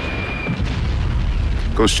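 Deep, continuous rumble of distant artillery fire and explosions, part of a battle soundscape. A man's voice comes in near the end.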